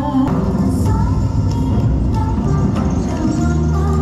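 Recorded dance music with held tones, a sharp accent shortly after the start, and a melodic line over it.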